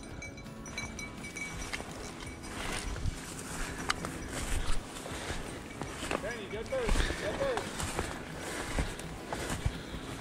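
Footsteps and rustling of dry brush and saplings as a person pushes through a dense thicket, with scattered snaps and knocks. A short, rising-and-falling voice-like call comes a little past the middle.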